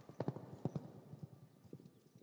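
Faint clip-clop of horse hooves, a quick irregular run of knocks that dies away near the end.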